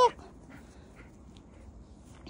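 Faint, irregular crunches of footsteps and dog paws in snow.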